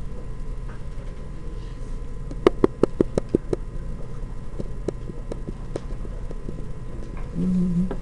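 A quick run of about eight sharp clicks a little over two seconds in, then a few scattered single clicks, over a steady background hum; near the end a man hums a short "mm".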